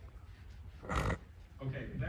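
A single short, sharp burst of breath noise from a person about a second in, the loudest sound here, followed by a man starting to speak.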